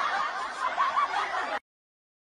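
A person laughing softly in light chuckles and giggles, cut off suddenly about three-quarters of the way through.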